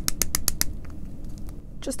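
Quick run of light clicks, about eight a second, from handling a small plastic jar of loose glitter pigment; the clicks stop under a second in.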